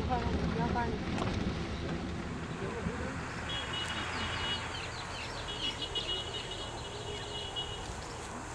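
Outdoor camcorder ambience: a steady low rumble with a brief snatch of voices in the first second. From about halfway through, a high, steady chirping or trilling runs until just before the end.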